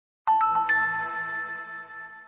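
Short synthesized chime sting for the Wondershare logo: three bell-like notes struck in quick succession, each higher than the last, ringing on together and fading away near the end.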